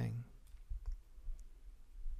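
A spoken word ends, then a few faint, sharp clicks from a computer mouse as the 3D model view is rotated.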